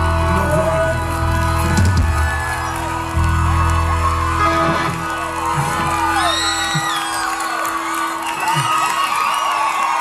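A live band playing the end of a reggae arrangement of a pop song, with held chords over a heavy bass that drops out about seven seconds in. The crowd cheers and whoops over the close.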